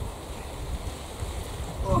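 Wind buffeting the microphone: a steady low rumble, with a voice starting near the end.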